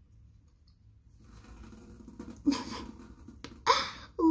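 A cotton pad rubbing over the lips to wipe off lipstick: a faint scrubbing that starts about a second in. Two short breathy bursts come through it, the second, near the end, with a little voice in it.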